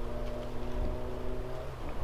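A motor engine running with a steady, even hum, which stops near the end.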